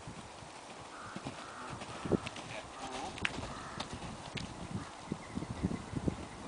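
Horse's hooves beating on an arena surface at canter: an uneven run of dull thuds with a few sharper clicks.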